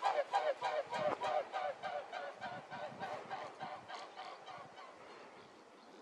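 A flock of large waterfowl calling in a fast, overlapping run of honks, loud at first and fading away over about five seconds.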